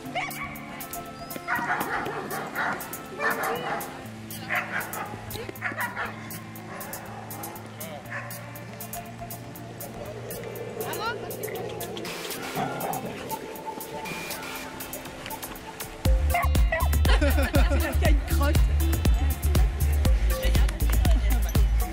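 Dogs barking and yipping at play, over background music with held notes; about sixteen seconds in, a loud bass-heavy beat comes in.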